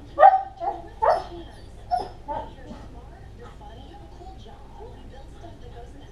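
A dog barking and yipping: about five short, high calls in quick succession in the first two and a half seconds, the first the loudest, with faint TV dialogue underneath.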